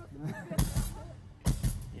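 Rock band playing loosely through the PA of a large empty arena: two heavy drum hits about a second apart over guitar, with a voice heard briefly.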